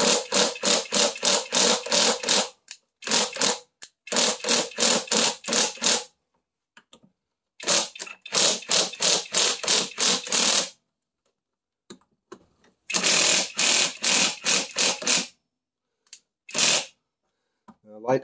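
Hand ratchet and socket clicking in quick repeated short strokes, about five a second, in several spells of a few seconds with brief pauses between, as the bolts of a brake caliper clamped in a vise are run loose.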